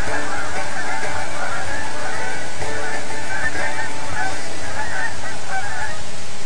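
A large flock of birds calling continuously, with many short calls overlapping.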